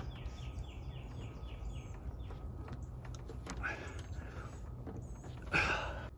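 A songbird singing a quick run of repeated notes, about five a second for the first two seconds or so, with a few fainter chirps after. Under it runs a low, steady rumble.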